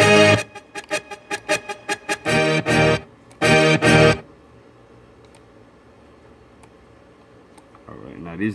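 Short pitched instrument sample chops, guitar-like, triggered from FL Studio FPC pads and heard through speakers, each stopping abruptly as the next begins because the pads are set to cut each other off rather than overlap: a quick run of short stabs, then two longer phrases, ending about four seconds in. After that only a low room hiss with a few faint clicks.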